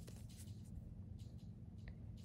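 Faint, soft scratching and rustling of a steel crochet hook drawing cotton thread through stitches.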